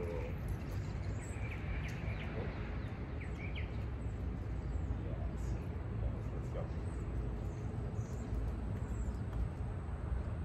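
Outdoor ambience: a steady low rumble, with a few faint bird chirps in the first few seconds.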